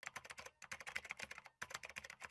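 Computer-keyboard typing sound effect: rapid key clicks in three runs, broken by short pauses about half a second and a second and a half in.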